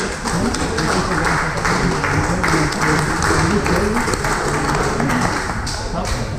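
Onlookers clapping and cheering, with several voices calling out over one another.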